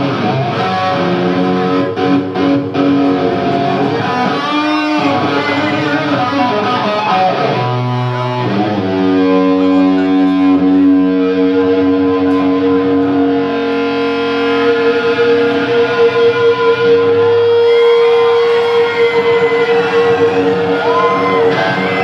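Electric guitar solo played live on a Gibson Les Paul through an amplifier: quick runs of notes at first, then long held notes, one ringing on for about ten seconds.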